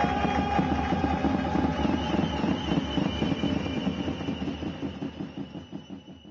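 Background music with a quick steady beat and long held notes, fading out over the last two seconds.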